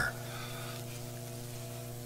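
Steady electrical hum: a low buzz of evenly spaced overtones with a faint hiss, unchanging throughout.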